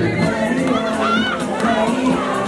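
A crowd of children shouting and calling out together over music with steady held notes.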